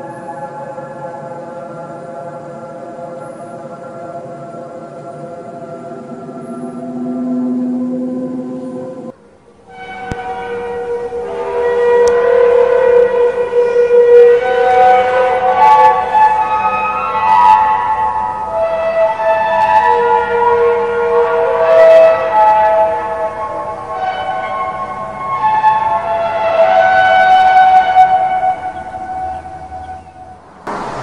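An eerie, trumpet-like drone from the sky, of the kind in viral "sky trumpet" recordings whose cause is unexplained. Several steady brassy tones sound together at first. About nine seconds in, the recording changes to a louder sound of many overlapping tones that waver and slide up and down in pitch.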